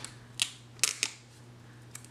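Three short, sharp clicks, the second the loudest, from a sticker being peeled up and handled with a small pointed tool on a planner page.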